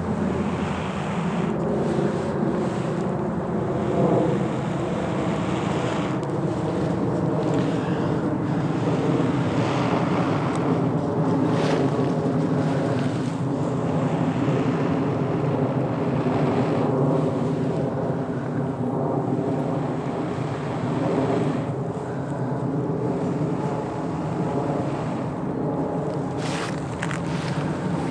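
Long, sustained breaths blown close into a honeysuckle-bark tinder bundle holding a char cloth ember, coaxing the ember into flame, with short pauses between breaths. A steady low hum runs underneath.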